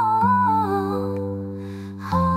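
Music with sustained low chords under a wordless melody line that steps downward, growing quieter toward the end.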